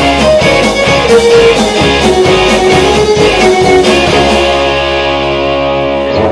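Live rock band, electric guitars, bass, drums and violin, playing the closing bars of a song. The drum hits stop about two-thirds of the way through and the band lets a final chord ring out.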